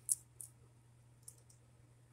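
Small hard-plastic Bakugan figures being handled: a sharp click just after the start, a softer click shortly after, and a faint one about halfway through, over a quiet steady hum.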